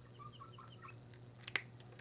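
A marker squeaking in short strokes on the glass of a lightboard as test-tube shading is scribbled in, several squeaks a second for about the first second. A single sharp click follows about one and a half seconds in.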